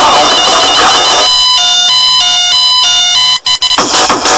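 Hardcore dance music mixed live from vinyl turntables. About a second in the beat drops out, leaving a beeping, alarm-like synth riff that steps in pitch about three times a second; after two brief cut-outs the full beat comes back in near the end.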